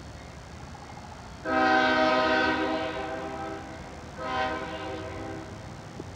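CSX diesel locomotive's air horn sounding a chord: one long blast of about two seconds starting about a second and a half in, then a shorter second blast about a second later.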